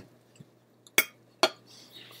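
A metal fork clinking twice, two sharp clicks about half a second apart.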